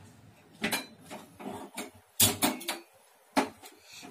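Sharp metallic clicks and knocks as a steel pot and a gas stove's burner knob are handled, about half a dozen separate strikes with quiet gaps between.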